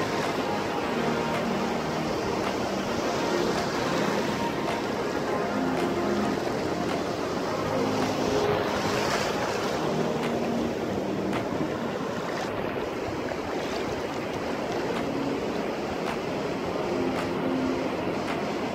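Surf washing over a shallow beach: a steady rush of small breaking waves and foaming water.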